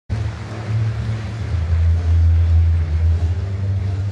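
Steady low rumble with an even hiss over it: arena ambience.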